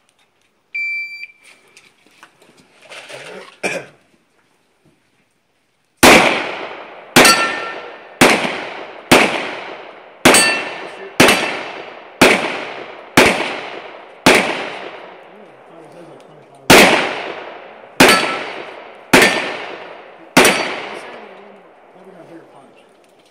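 A shot timer beeps once about a second in, then a Glock 40 10mm pistol fires thirteen loud shots, each a sharp crack with an echo dying away: nine roughly a second apart, a pause of about two seconds, then four more.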